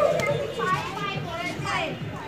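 Children's voices shouting and calling out as they play, several high-pitched calls overlapping, the loudest at the very start.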